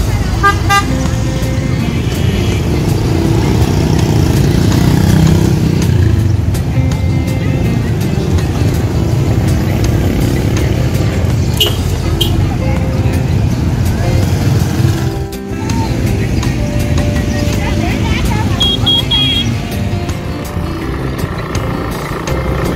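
A crowd of motorbikes with engines running and moving off in a dense throng, with a background hubbub of many voices. A few short motorbike horn beeps cut through, one near the start and a double beep near the end.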